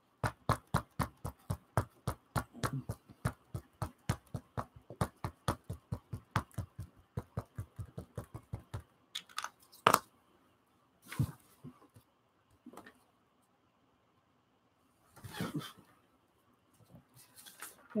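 Small ink pad dabbed rapidly onto a hand-carved rubber stamp, about four to five taps a second for some nine seconds. Then a few separate knocks follow.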